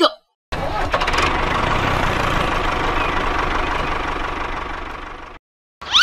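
Tractor engine running, a fast even low beat under a dense rattle; it fades over its last second and cuts off suddenly.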